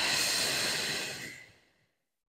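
A person's long audible breath out, fading away shortly before the end, taken while holding a standing forward fold.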